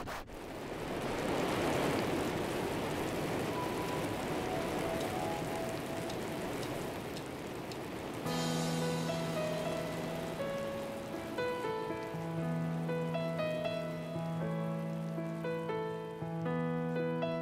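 Rain sound swelling in as a song's intro, with a few faint high notes over it; about halfway through, sustained keyboard chords on a Nord Stage 3 enter and carry on over the rain.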